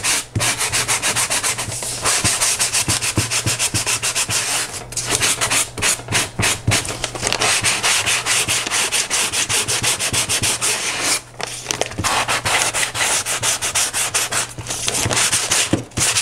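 A sanding sponge is rubbed in rapid back-and-forth strokes along the paper-covered edge of a board, with a few short pauses. It is sanding the glued brown paper down flush with the edge.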